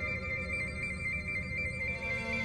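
Synthesizer score: a sustained electronic drone with a rapid high two-note warble, like a phone ringer, over a low rumbling throb.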